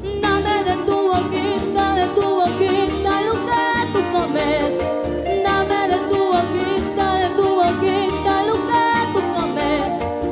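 A girl singing a melody with vibrato into a microphone over live Latin American folk music with a steady beat and plucked strings.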